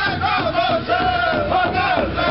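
Pow-wow drum group singing a southern-style shake song: several men singing high in unison over the beat of one large hide hand drum that they strike together.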